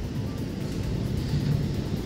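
Steady low rumbling noise of wind buffeting an outdoor microphone on a stormy coast, with surf beneath it.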